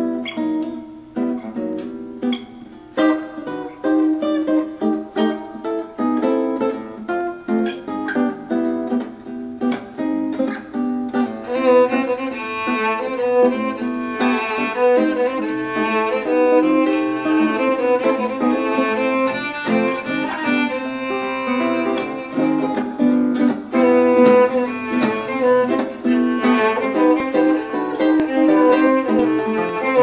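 Instrumental duo of classical guitar and violin. The guitar picks a melody alone at first, and the violin comes in about a third of the way through, bowing a melody over the guitar's accompaniment.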